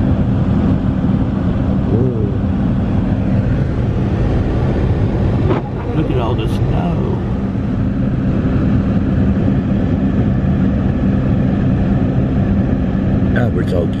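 An engine idling with a steady low hum, faint voices in the background, and a short knock about halfway through.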